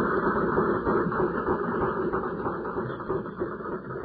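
Audience applauding, heard through a narrow, muffled old tape recording, growing gradually quieter as it fades out.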